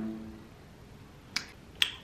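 Two sharp clicks a little under half a second apart, coming near the end of an otherwise quiet stretch.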